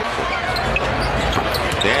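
Basketball game sound in an arena: steady crowd noise with a few short, sharp knocks from the ball and players on the hardwood court.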